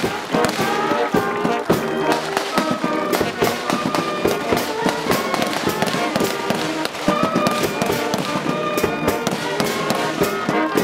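Brass band playing a slow tune for a flag hoisting, with many sharp cracks mixed in throughout.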